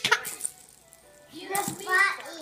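A baby's short laugh with a small plastic toy rattling in his hands at the start, then a moment of quiet and a woman speaking briefly near the end.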